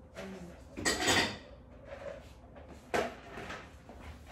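Handling sounds of a wooden board on a sculptor's turntable being turned: a scraping rustle about a second in and a sharp knock about three seconds in.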